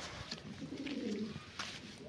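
Domestic pigeons cooing faintly, a low wavering coo through the middle, with a few light ticks.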